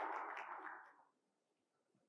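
Audience applause dying away within the first second, then near silence.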